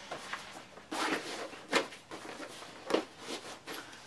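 Nylon fabric of a 9.11 Tactical Series rifle bag rustling and scraping as it is folded and handled, in several short bursts, the sharpest near the middle.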